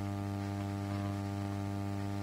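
Steady electrical mains hum with a stack of even overtones, the strongest low tone near 100 Hz, unchanging throughout.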